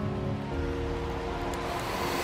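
Steady hiss of rain and running runoff water. For about a second, a few soft held musical notes sound underneath.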